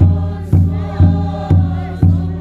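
A congregation sings a hymn together over large barrel drums, which are struck steadily about twice a second. Each deep beat is the loudest sound and fades away before the next.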